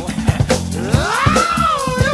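Soul-funk band recording with drums and bass; over them a single high lead note slides steeply up in the middle and then sags slowly.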